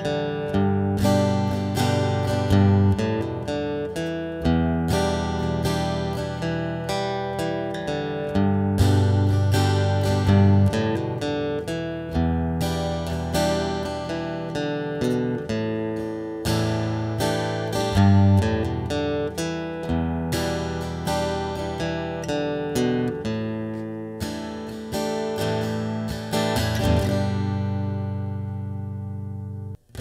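Klos carbon-fibre travel acoustic guitar, heard through its built-in Fishman pickup direct into a PA system, playing a fingerpicked song of plucked chords and melody. Near the end a final chord is left to ring and fade out.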